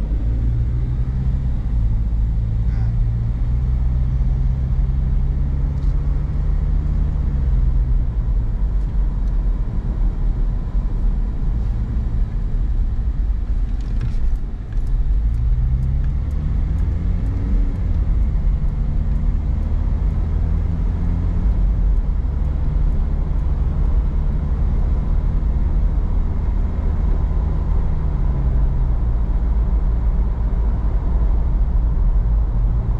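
Car engine and road noise heard from inside the cabin while driving, a steady low rumble whose engine note slowly rises and falls several times as the car speeds up and eases off. About halfway through there is a brief dip with a few light clicks.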